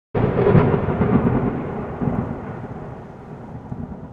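A roll of thunder that starts suddenly loud and dies away over about four seconds.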